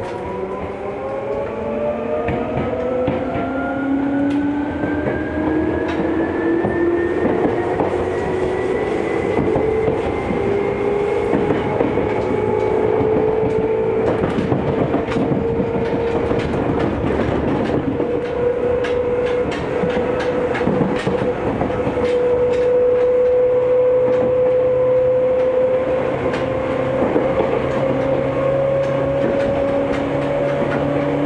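Seibu 2000 series electric train accelerating away, heard from inside the carriage. The traction motors whine steadily higher in pitch for the first dozen seconds or so, then level off with only a slow further rise. From about the middle on, the wheels clack over rail joints and points.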